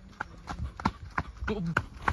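Running footsteps on a rough concrete path, about three steps a second. A short bit of voice comes in during the second half.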